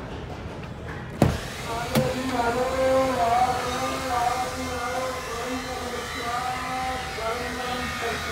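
Two sharp clicks, about a second in and again a second later, then a singing voice holding long, wavering notes, as in a song playing.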